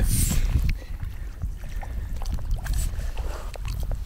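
Water sloshing and splashing lightly as a carp landing net is drawn through shallow lake water, with wind rumbling on the microphone, loudest in the first second.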